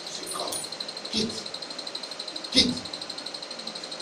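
Short, sharp shouted syllables through a microphone and loudspeaker, two of them about a second and a half apart, the second louder, over a faint steady electrical whine from the sound system.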